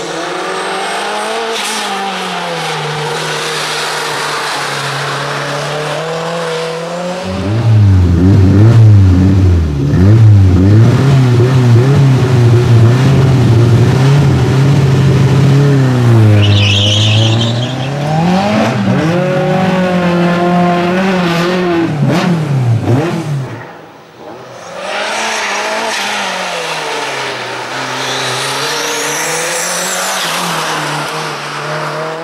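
Renault 5 race car engine revving up and down over and over as it weaves through a cone slalom, louder and closer through the middle stretch. A brief high tyre squeal sounds just past the middle.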